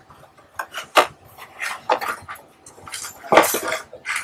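Stacked masonite printing plates being handled and shifted by hand: a series of sharp knocks and clacks of hard board on board, a few a second, with a denser clatter about three and a half seconds in.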